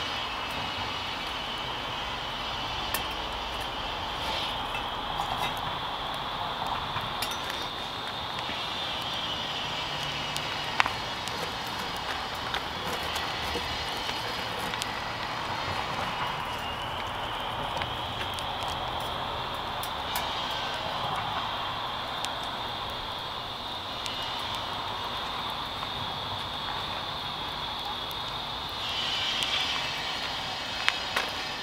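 Wood fire burning in a rocket stove under a teapot, with a few sharp crackles from the burning sticks, over a steady high buzz that changes strength a few times and fades near the end.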